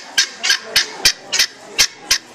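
A caged bird giving a rapid series of short, harsh notes, about three a second.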